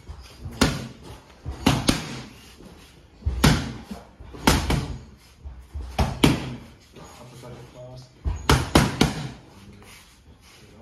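Boxing gloves smacking into focus mitts during Muay Thai pad work: about six quick combinations of two or three punches each, with short pauses between.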